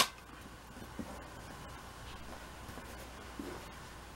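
A sharp click at the very start, then faint rustling of a cotton sheet as a cat shifts its position on it, with a few soft ticks in an otherwise quiet room.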